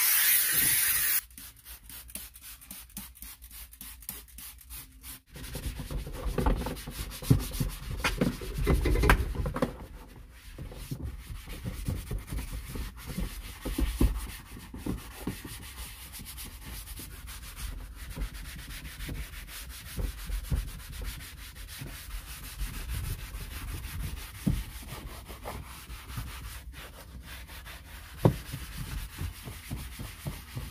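Handheld steam cleaner hissing for about the first second, then cutting off. A few seconds later a hand-held scrubber starts rubbing back and forth over a foamed plastic interior panel in irregular strokes, loudest in the first few seconds of scrubbing.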